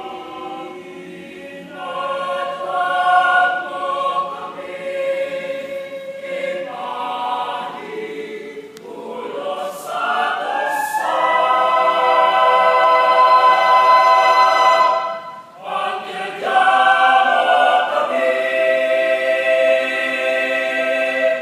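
Mixed choir singing a cappella in sustained chords. About ten seconds in, the voices slide upward into a loud held chord, break off briefly near fifteen seconds, then come back in.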